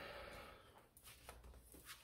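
Near silence, with a few faint short rustles and taps from a hardcover book being handled as its cover is opened.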